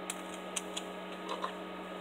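A few faint, irregular clicks and taps of the plastic parts of a Beyblade Burst top being handled and fitted together, over a steady low hum.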